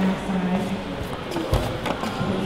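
Voices in a large workshop, trailing off at the start and faint after that, with one dull low thump about one and a half seconds in.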